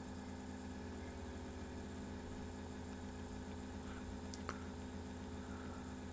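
Faint, steady electrical mains hum under quiet room tone, with two faint clicks a little over four seconds in.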